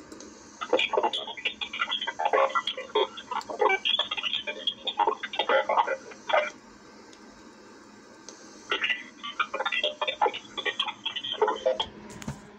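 P25 digital scanner's speaker playing an encrypted transmission it cannot decode: garbled, rapid clicking and warbling. It comes in two bursts, a longer one of about six seconds, then a pause of about two seconds and a shorter burst of about three seconds.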